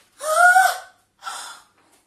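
A woman's loud, theatrical gasp of shock with a short 'ah' sound in it. About a second later comes a softer breath out.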